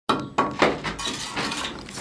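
Steel mason's trowel striking brick three times in quick succession with a ringing clink, then scraping mortar along the brick edge.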